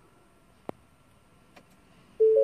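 Quiet room tone broken by one sharp click about two-thirds of a second in, with a couple of faint ticks later.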